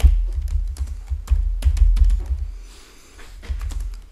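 Typing on a computer keyboard: a quick run of keystrokes with dull thuds underneath, thinning out near the end.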